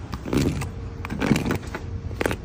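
A metal spoon scraping and sliding under rows of soft buns, in two swishing strokes about a second apart.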